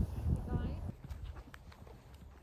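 Wind rumbling on a handheld phone microphone outdoors, with a short vocalised sound about half a second in; the rumble drops off abruptly about a second in, leaving a quiet outdoor background.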